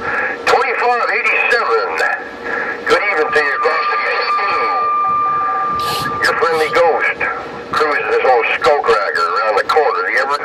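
Distant stations' voices coming through a Uniden Grant LT CB radio's speaker on channel 11, too garbled to make out. A steady whistle sits under them from about three to six seconds in, and a short burst of hiss comes near the six-second mark.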